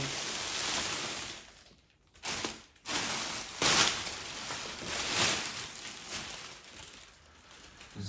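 Plastic wrapping film crinkling and rustling as it is pulled off an electric scooter. It comes in irregular swells, with two short pauses about two and three seconds in, and tails off near the end.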